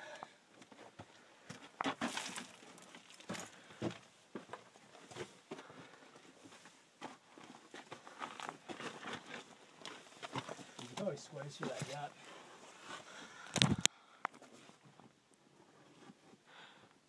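Irregular scuffing, scraping and rustling of a person crawling over rock and loose stones under mine timbers, with scattered small knocks and one sharp knock about three-quarters of the way through.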